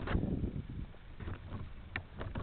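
Low, uneven rumble of handling and wind noise on the quadcopter's onboard camera microphone as the unpowered craft is turned by hand, with a short noise at the start and a brief click near the end.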